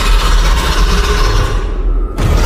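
Horror sound-design effect: a deep rumble under a loud rushing noise, which cuts off abruptly near the end.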